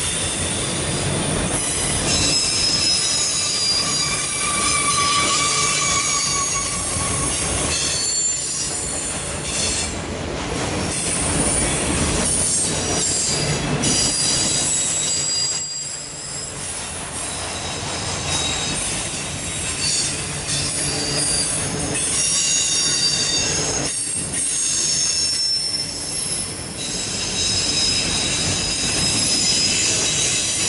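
Loaded autorack freight cars rolling past close by: a steady rumble of steel wheels on rail, with high-pitched wheel squeals coming and going throughout.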